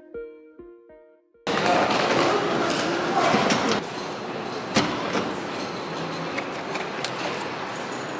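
Soft piano background music ends. Then the busy ambience of a station hall cuts in: a hubbub of people's voices and room noise, with a few sharp clicks and knocks, the loudest about five seconds in.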